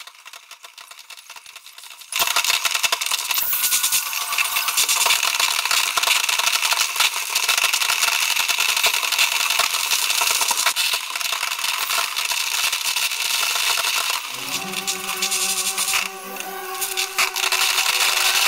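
Fireworks crackling: a sudden onset about two seconds in, then a loud, dense, rapid crackle from crackler shells. Near the end, orchestral string music comes in under the crackle.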